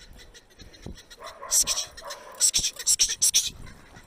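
Small black-and-white dog yelping and whining excitedly in a string of short, high bursts, starting about a second in, while held by its collar before the chase.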